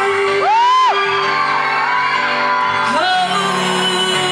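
Live pop ballad through a PA: a singer holding a long note over grand piano chords. About half a second in, a short high-pitched whoop rises and falls above the music, typical of a fan screaming.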